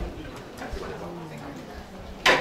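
Low, indistinct voices away from the microphone, with a few small knocks and rustles of papers and movement at a table.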